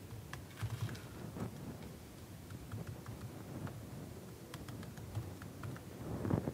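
Faint keystrokes on a computer keyboard as a short terminal command is typed: irregular clicks, some in quick runs.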